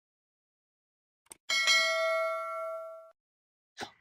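A single bell-like ding, a sound effect set to an on-screen subscribe graphic. It strikes about a second and a half in after a faint click, rings for about a second and a half while fading, then cuts off suddenly.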